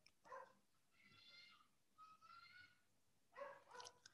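Near silence with two faint, high-pitched whines about a second and two seconds in, each about half a second long and rising slightly.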